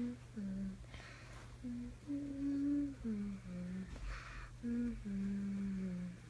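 A voice humming a slow, lullaby-like tune in short phrases, each stepping down in pitch and ending on a longer held note, over a steady low hum.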